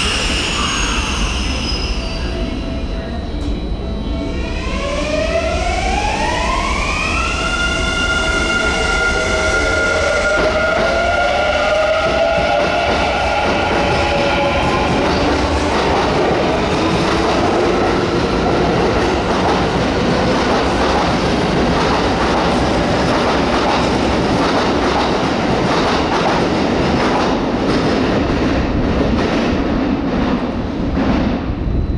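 A Kintetsu 9020 series electric train pulling away from the platform. Its VVVF inverter whine climbs in several stepped tones from about four seconds in, then the running noise of motors and wheels builds and holds loud as the cars pass close by.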